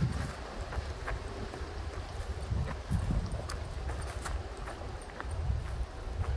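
Footsteps of a person walking on a dry dirt and grass trail, a steady run of short, irregular steps, over a low rumble on the microphone.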